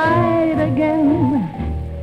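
A 1946 jazz recording: a woman singing a sustained, sliding vocal line over band accompaniment. The voice falls in pitch and drops out about a second and a half in, leaving the band holding low notes.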